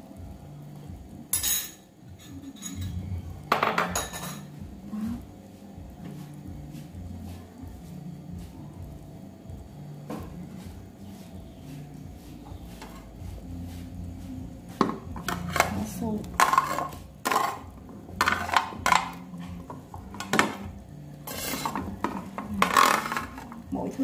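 A metal spoon knocking and clinking against a stainless steel soup pot: a couple of knocks early on, then a quick run of clinks through the last ten seconds as the spoon works among the vegetables in the pot.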